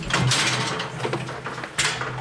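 Sheep shears working through a ewe's fleece: a hissing cutting noise for about a second, with a low steady hum underneath and a short sharp scrape near the end.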